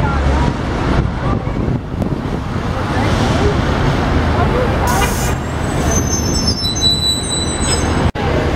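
City street traffic: cars and a city bus passing close by, a steady low rumble of engines and tyres. A short hiss comes about five seconds in, followed by several thin, high, steady whines near the end as the bus goes by.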